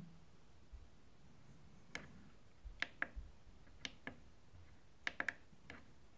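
About ten short, soft clicks of the Yamaha PSR-S670 keyboard's panel buttons being pressed, scattered and unevenly spaced, as the USB audio player's volume is stepped down.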